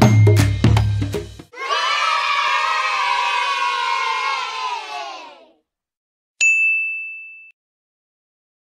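Nursery-rhyme backing music with drums stops about a second and a half in, and a group of children cheers for about four seconds, fading out. Then a single bright bell ding rings and fades away, the chime of a subscribe-button animation.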